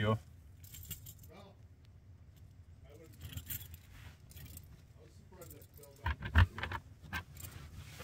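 A bunch of keys jangling and clicking as a lock on a wooden storage lid is worked, then a couple of louder knocks from the lid a little after six seconds in.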